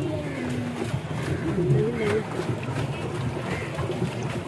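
Several people's voices talking in the background, unclear and overlapping, over a steady low hum.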